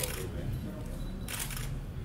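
Camera shutters firing in quick bursts of rapid clicks, twice, over a low murmur of voices.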